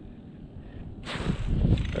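Rustling and wind noise on the microphone, starting suddenly about a second in and growing louder, with no steady tone or rhythm.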